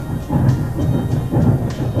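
Union Pacific 9000-class 4-12-2 three-cylinder steam locomotive (UP 9009) running under power. It makes a heavy low noise from its exhaust and running gear, swelling twice, about half a second and a second and a half in.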